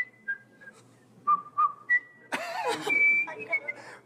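A man whistling a simple carousel tune in short held notes that step down in pitch and back up. A louder burst of voice breaks in just past the middle.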